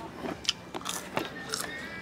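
Quiet dining-room background with a few sharp clicks and ticks, and faint music playing in the room.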